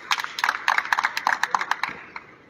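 Several people clapping their hands, fast and uneven, the claps stopping just before the end.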